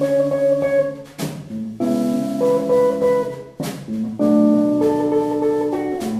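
Acoustic guitar playing jazz chords, each struck sharply and left to ring, changing chord four times.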